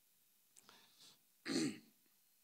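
A man clears his throat once into a close microphone, a short burst about one and a half seconds in, with faint breaths just before it.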